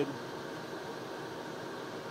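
Steady, even background hiss and hum with no distinct events.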